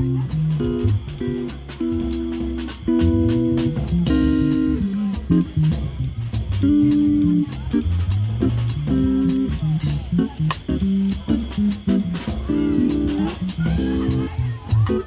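Live jazz trio playing: electric guitar picking single-note lines over electric bass, with a drum kit keeping a steady cymbal beat.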